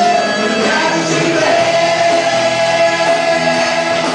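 Live gospel worship band with several singers over electric bass guitar and band, the voices holding one long note.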